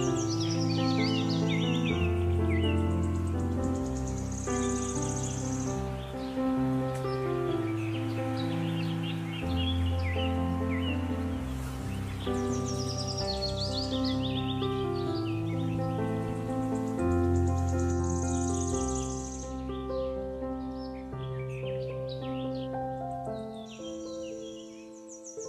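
Calm background music of long held notes with birdsong woven into it: bursts of quick high chirps come back every several seconds over the slow chord changes.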